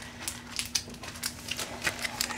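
Light scattered clicks and crinkles of plastic packaging being handled, over a faint steady hum.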